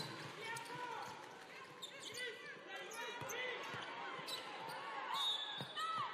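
Basketball game on an indoor hardwood court: the ball bouncing in irregular thuds and sneakers squeaking in short high chirps over a steady crowd murmur in a large hall. A brief high steady tone sounds just before the end.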